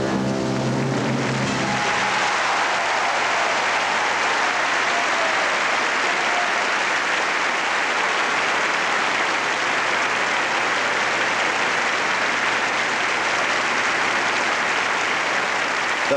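Large theatre audience applauding steadily at the end of a ballet pas de deux. The orchestra's final chord dies away in the first two seconds.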